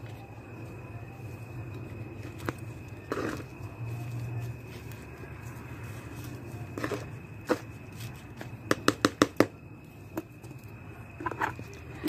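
Hands working soil and mum cuttings in a plastic pot: soft scattered rustles and taps, with a quick run of about six clicks near the three-quarter mark, over a steady low hum.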